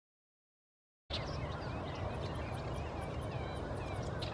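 Silent for about the first second, then outdoor marsh ambience comes in: many birds chirping and calling, with high ticking notes, over a steady low rumble.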